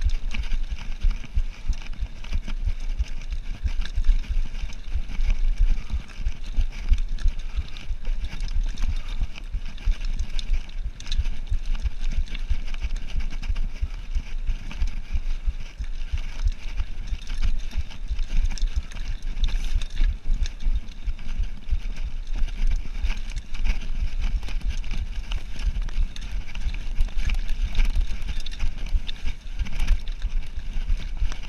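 Cannondale Trail 7 mountain bike rolling slowly over a dirt and stony trail: a steady rattle of many small knocks and clicks from the bike and tyres over stones, over a constant low rumble.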